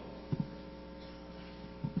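Steady electrical mains hum on the sound system, with two short low thumps about a third of a second in as the pulpit microphone is handled. A throat-clearing comes at the very end.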